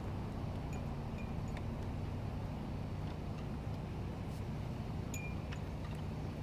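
Metal flagpole hardware (halyard clips and rope) clinking against the pole in the wind: a few light, scattered metallic pings over a steady low rumble of wind and traffic.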